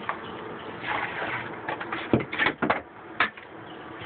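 Rustling and scraping handling noise, with a cluster of sharp knocks about two seconds in and another knock a second later.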